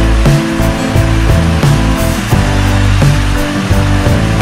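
Background music with deep bass and a steady beat.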